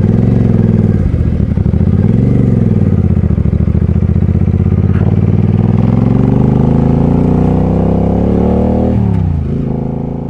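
Suzuki C50T Boulevard's V-twin engine pulling away from a stop: the revs rise and dip twice through the low gears, then climb steadily for several seconds. They drop back near the end as the sound fades out.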